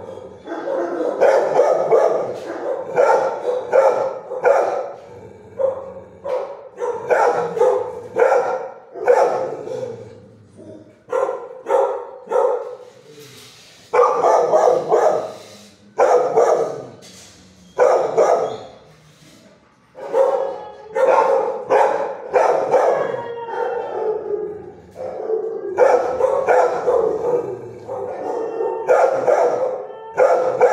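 Dogs barking in a shelter kennel block, a steady run of barks about two a second, with short lulls about ten seconds in and just before twenty seconds.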